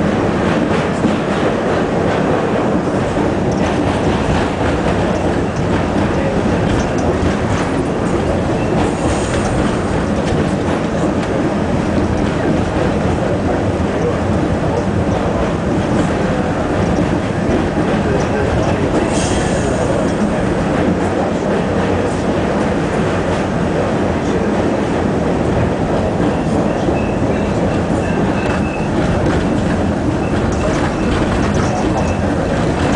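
R68 subway train running at speed, heard from inside at the front window: a steady loud rumble of wheels on rails, with a few brief high squeals.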